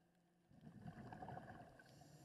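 Faint, muffled bubbling of a scuba diver's exhaled breath leaving the regulator. It starts about half a second in and lasts about a second and a half, with a thin hiss of the next inhale just at the end.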